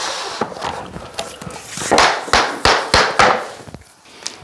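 Rubber mallet knocking vinyl plank flooring into place: rustling handling noise, then about five sharp knocks in quick succession in the second half.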